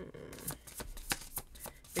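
Tarot deck being shuffled by hand: a quick, uneven run of soft card clicks.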